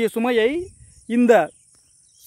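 A man talking in Tamil in two short phrases, over a steady high-pitched chirring of insects in the background.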